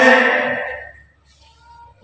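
Singing in slow, held notes: a sung phrase ends on a long note that fades out within the first second, followed by a short pause before the singing starts again at the very end.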